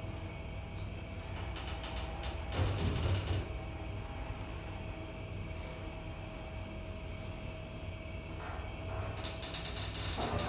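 Schindler HT elevator going down one floor: mechanical rattling and clicking from the car and doors a couple of seconds in, under a steady whine from the drive that stops about eight and a half seconds in, then quick rapid clicking near the end as the car arrives.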